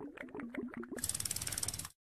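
Ratchet-like clicking sound effect of an animated outro card. A quiet run of clicks with a short stepping tone in the first second gives way to a faster, finer rattle of ticks that stops suddenly near the end.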